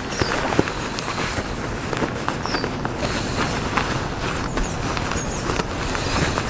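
Lightweight waterproof jacket fabric rustling and crinkling as it is stuffed by hand into its own pocket, with many small crackles.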